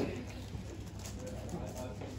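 Low murmur of voices in the room, with faint, scattered clicks of a puzzle cube being turned by hand.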